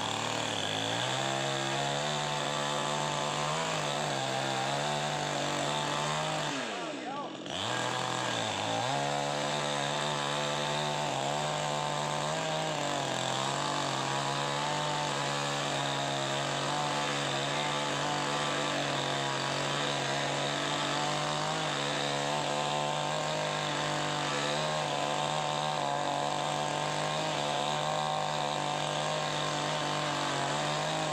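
Chainsaw running steadily at high speed, easing off briefly about seven seconds in, its pitch sagging and then climbing back up.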